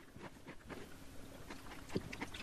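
Faint sipping and mouth sounds of someone drinking from a cup, then a light knock just before the end as the cup is set down on a wooden counter.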